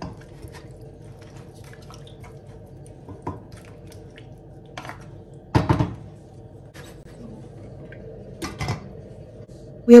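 A wooden spoon stirring chicken pieces in a stainless steel pot, with faint wet scrapes and clicks over a steady low hum. There are two louder knocks, one about halfway through and one near the end.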